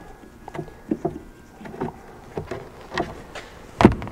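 Light clicks and taps of hand work with a screwdriver on the plastic taillight's Phillips retaining screws, then one louder knock near the end.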